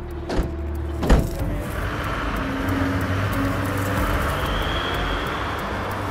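A vehicle door slams shut about a second in, after a lighter knock just before it. Then a Volkswagen van pulls away with a steady engine and road noise.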